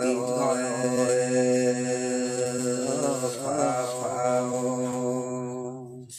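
A voice singing a Red Dao folk song in long, held, slowly wavering notes, in a chant-like style. It fades out at the end.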